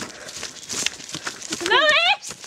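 Footsteps hurrying along a dirt woodland path, a run of irregular crunching steps with rustling. Near the end a girl's voice calls out, rising in pitch.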